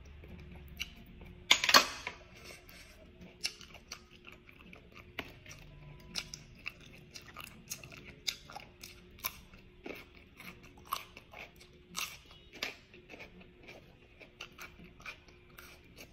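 Close-miked chewing and mouth sounds of someone eating steamed whelks (bulot sea snails), with many short sharp clicks scattered throughout and one louder burst about two seconds in.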